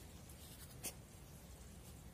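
Faint rustling and crackling of fresh leaves being handled, with one sharper crackle about a second in.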